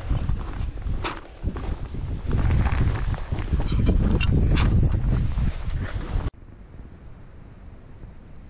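Wind buffeting the microphone over crunching footsteps in snow, with a few sharp scraping clicks. About six seconds in it cuts off abruptly to a much quieter, steady hiss.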